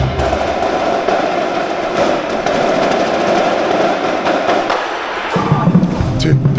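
Marching percussion ensemble playing a dense, continuous drum passage, with stronger low sound coming in near the end.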